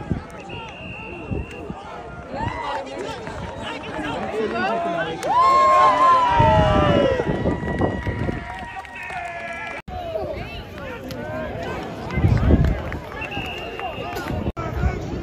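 Voices of players, coaches and onlookers at an outdoor football practice, with one loud drawn-out call that falls in pitch about six seconds in.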